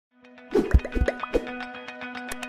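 Electronic intro music for an animated title card: a run of bubbly, upward-gliding plops about half a second in, over a held tone and a quick regular ticking beat.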